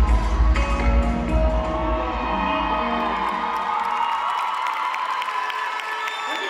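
Dance music with a heavy bass beat fades out over the first few seconds while a crowd of young spectators cheers and whoops.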